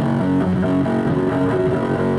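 Casio SK-8 keyboard played through guitar effects apps on an iPhone: a melody of several held notes in quick succession, with a guitar-amp-like tone.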